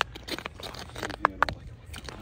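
Irregular crunches and scrapes on crusted ice as a fishing line is worked by hand through an ice hole, over a steady low rumble.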